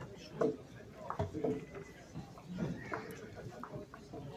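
Echoing ambience of a busy indoor short mat bowls hall: distant overlapping chatter from players on other rinks, with scattered sharp clacks of bowls knocking together on the neighbouring mats.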